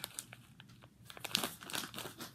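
Crinkling of dry-mix food packets being handled and set down, a run of short rustles with a few louder crinkles about one and a half seconds in.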